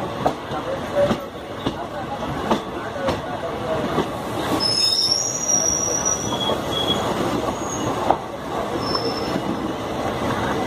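Two passenger trains crossing on adjacent tracks, heard from the open door of one of them: a steady rumble of wheels on rail with repeated sharp rail-joint clacks as the other train's coaches run past. From about halfway through come several brief high-pitched wheel squeals.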